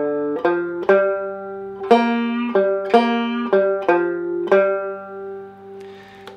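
Five-string banjo picked slowly with thumb and index finger, playing a single-note blues lick in G over a G7 chord from the G blues scale. It has slight bends on the third string that tease the minor third up toward the major third. About nine notes, the last held and ringing out as it fades.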